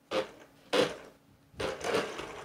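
Electric drive motor and gears of a 1:14 scale RC car whirring in three short bursts as the throttle trigger is blipped, the car shuffling on a wooden tabletop.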